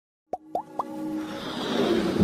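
Logo intro sound effects: three quick pops with a rising pitch, about a quarter second apart, then a whoosh that builds steadily into electronic music.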